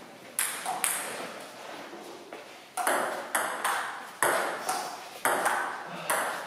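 Table tennis ball clicking off bats and the table: two pings in the first second, then after a pause a rally at about three hits a second, each hit echoing briefly in the hall.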